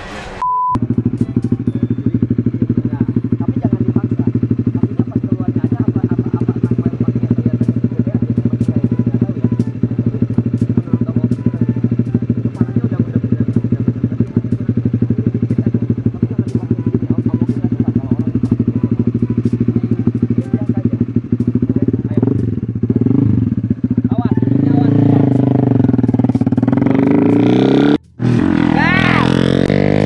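Small racing motorcycle engine running steadily at idle. In the last few seconds it revs, its pitch rising and falling as the bike is ridden.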